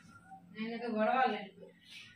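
A person's voice: one drawn-out, wavering vocal sound lasting about a second, fairly quiet.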